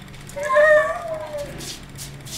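A cat meowing once: a single drawn-out call about a second long that rises slightly and then falls in pitch.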